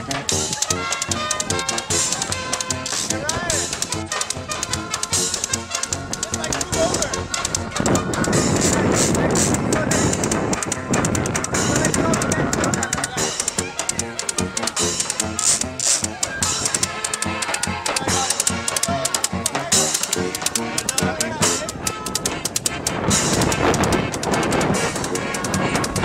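Street band playing a lively hora on saxophone and accordion over a steady bass drum and cymbal beat, with a louder, noisier stretch about a third of the way in.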